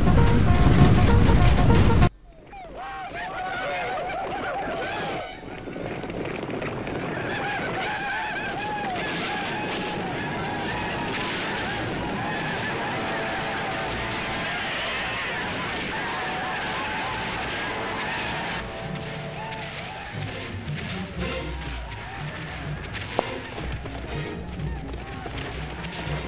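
Film battle soundtrack: a loud burst for the first two seconds that cuts off suddenly, then music mixed with many wavering yells and cries.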